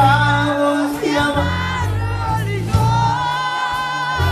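A live Tejano band playing, bass and guitar under the melody, while a group of women in the audience sings the song together.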